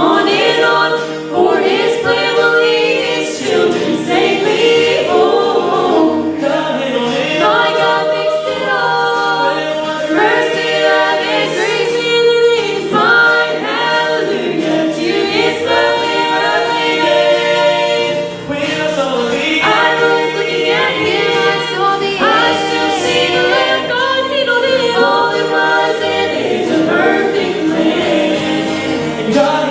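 Gospel vocal quartet of men's and women's voices singing in close harmony through microphones and a sound system, backed by acoustic guitar.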